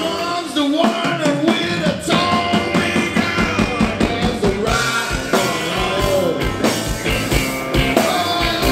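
Live rock and roll band playing: electric guitars, bass and a drum kit keeping a steady beat, with a lead vocal over them.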